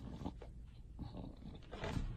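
English bulldog growling and grumbling in low, throaty rumbles, louder near the end.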